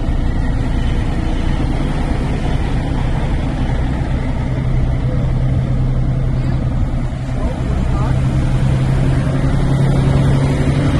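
Semi-truck engine and cab noise heard from inside the cab, a steady low rumble as the truck rolls along. A steady low hum comes up about halfway through and holds.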